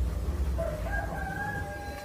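A single drawn-out call holding one pitch for nearly two seconds, starting about half a second in, over a low hum.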